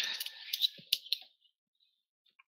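A quick flurry of sharp clicks and light rattling close to the microphone, lasting about a second, then a few faint ticks.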